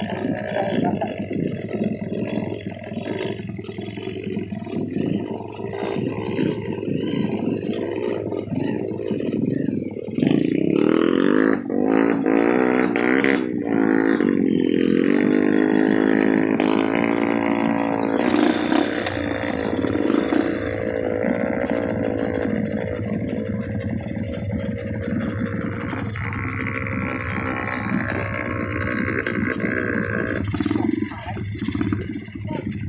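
Dirt bike engines on a trail: uneven engine clatter at first, then about ten seconds in a motorcycle engine revs up and holds a high, steady note for several seconds before easing back to a lower run.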